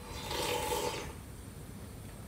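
A person slurping udon from a cup: one loud, hissing slurp lasting about a second, in the first half.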